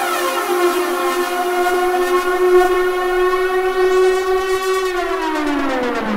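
Electronic dance music breakdown with no beat: a held synth tone with bright overtones sustains, then slides steeply downward in pitch from about five seconds in.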